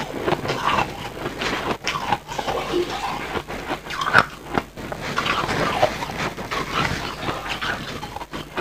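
Close-up chewing and crunching of crumbly white ice in the mouth: a dense, irregular run of crackling crunches.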